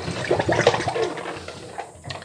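Water sloshing and splashing in a sink full of soaking bottles as a hand moves them about in it, louder at first and dying down.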